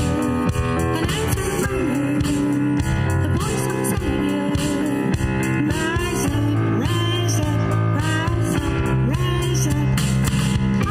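A live worship band playing a contemporary Christian song: women singing the melody, with echoed backing lines on the chorus, over electric bass guitar, keyboard and a drum kit.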